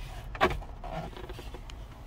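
Handling noise of a hand on an RC car's plastic body shell: one sharp knock about half a second in, then faint rustling and small ticks over a low steady hum.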